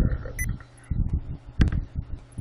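A few scattered computer keystrokes, separate sharp clicks and low thumps with short pauses between them.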